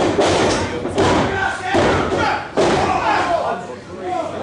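Heavy thuds on a wrestling ring's canvas, about four in three seconds, as wrestlers stomp and hit the mat, with fans shouting between the impacts.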